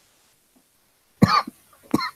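A man's single short cough about a second in, after near silence, with a brief throat sound near the end.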